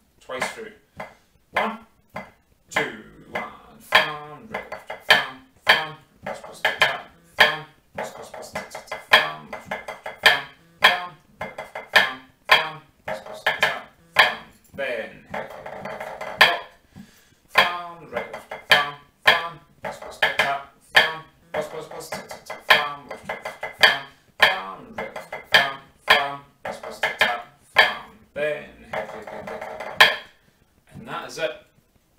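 Drumsticks playing a 3/4 pipe band snare march part on a practice pad: crisp single strokes and flams in a steady triple rhythm, broken several times by short, dense rolls.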